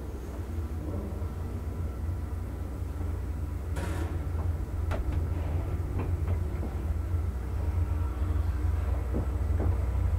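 ASEA traction elevator car travelling up the shaft: a steady low rumble of the moving car, with a few clicks and knocks on top, the sharpest about four seconds in.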